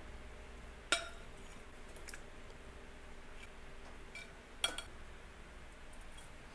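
Metal tongs clicking against a wire crisper tray as chicken pieces are lifted off it: one sharp click about a second in and another nearly four seconds later, with a few fainter ticks between. A faint low hum runs underneath.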